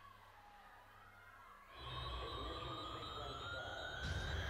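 The soundtrack of a stage dance routine starts about two seconds in: a deep low rumble with a slowly rising siren-like whine over it, after a faint, quiet start.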